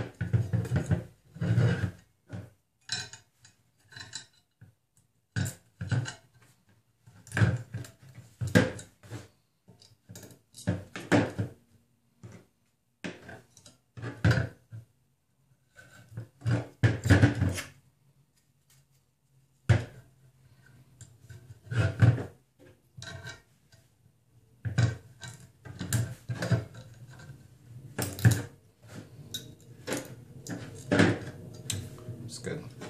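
Irregular clatter, clicks and knocks of an aluminium 3D-printer carriage plate and its linear bearings being handled and shifted on a tabletop while zip ties are fastened and pulled tight with pliers. The knocks come in scattered clusters, with a short lull about two-thirds of the way through.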